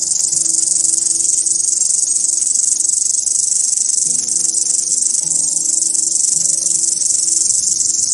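A cricket stridulating: one continuous, very rapid high-pitched trill that stays at an even level throughout, heard over soft background music.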